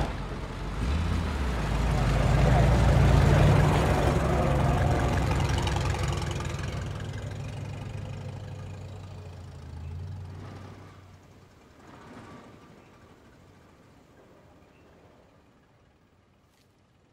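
A car engine pulling away, speeding up and then fading into the distance over about ten seconds.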